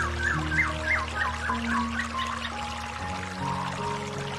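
Soft instrumental music of slow, sustained notes laid over the steady rush of a small stream pouring over rocks. In the first half, a bird chirps a quick run of short notes.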